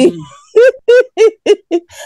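A woman's high-pitched laugh: a quick run of about six short hoots, each rising and falling in pitch.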